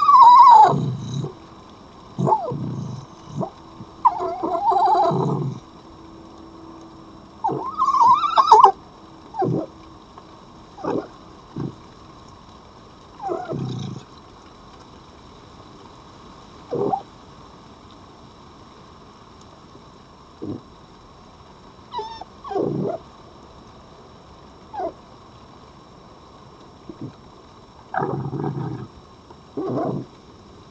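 Red foxes vocalising in short, irregular bursts at close range. The loudest calls come in the first nine seconds, with briefer ones scattered through the rest.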